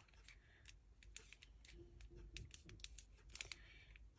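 Faint scattered clicks and light taps of craft supplies being handled on a desk, with a small plastic glue bottle picked up and moved.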